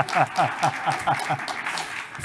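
Laughter in a lecture hall: a run of quick, evenly spaced laughing bursts tapering off, with scattered clapping from the audience.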